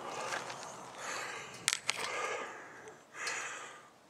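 Quiet rustling and crunching outdoors, with a couple of sharp clicks a little before two seconds in: footsteps on dry dirt and a handheld camera being moved about.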